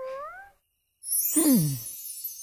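A cartoon character's short pitched "hm?" with a rising end. About a second later comes a louder, falling pitched sound with a bright, shimmering hiss over it.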